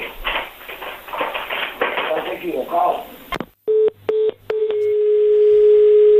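Voices over a telephone line for about three seconds, then a click as the call is hung up, followed by a telephone line tone: three short beeps and then a steady tone that cuts off suddenly.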